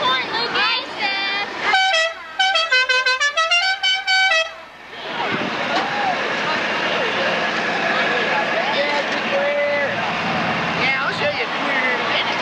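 A vehicle horn sounding a rapid run of short toots that step down and back up in pitch like a little tune. After that comes a steady crowd hubbub with scattered shouts.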